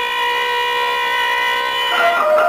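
Brass in a radio drama's orchestral theme music holding one long steady note, with the rest of the orchestra starting to move again right at the end.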